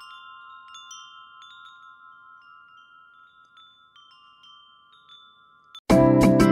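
Wind chime tinkling: a few light strikes over long ringing tones that slowly die away. Loud music cuts in abruptly just before the end.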